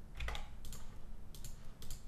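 Computer keyboard keys being pressed: a handful of separate, irregular clicks.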